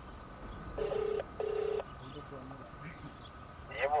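Phone ringback tone heard through a handset's loudspeaker: one double ring, two short steady beeps about a second in, the call not yet answered.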